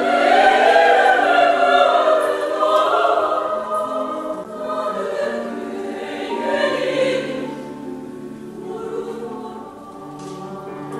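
Women's choir singing, loud at first and growing gradually softer toward the end.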